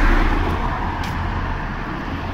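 Road traffic: a car passing close by, its tyre and engine noise loudest at the start and easing off as it moves away.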